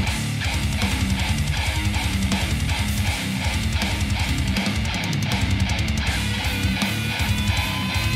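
Heavy metal music led by electric guitar playing a riff with fast, even picking and no break.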